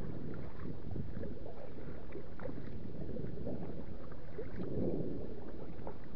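Lake water lapping and splashing against a kayak's hull, with drips and splashes from the paddle strokes; a slightly louder wash comes about five seconds in.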